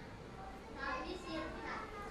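Faint background voice, high-pitched like a child's, heard briefly about a second in over a low room hum.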